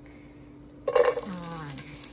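Chopped garlic dropped into hot oil in a pot, sizzling. It starts suddenly about a second in, loudest at the drop, then keeps crackling steadily.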